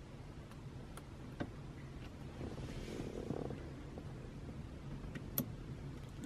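Faint handling of a small plastic wiring-harness connector and its wires as a terminal is pushed into the connector: a few light clicks, the loudest near the end, with soft rustling, over a low steady hum.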